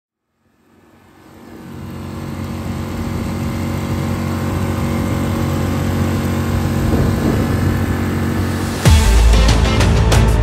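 Mercury 6 hp outboard motor running steadily under way, fading in over the first couple of seconds. About nine seconds in, loud music with a beat cuts in suddenly over it.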